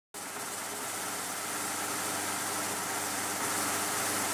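Steady hiss with a faint low hum underneath, slowly growing louder: an old-film projector noise effect.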